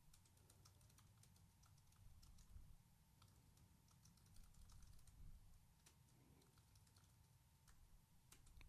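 Faint typing on a computer keyboard: a quick, uneven run of soft key clicks as a git add and a git commit command are typed. A faint steady tone runs underneath.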